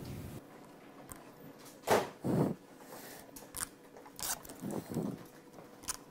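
Red plastic liner being peeled off strips of 3M VHB double-sided foam tape stuck to an aluminium sheet: a few short peeling sounds, the two loudest close together about two seconds in, with quiet room tone between.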